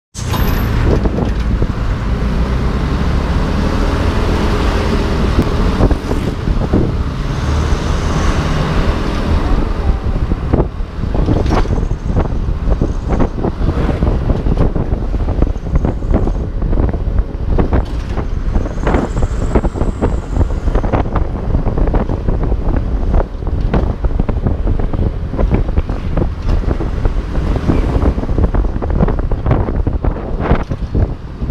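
Wind buffeting the microphone of a moving motorcycle, crackling all through, over the low, steady drone of its Yamaha F1ZR two-stroke engine and road noise.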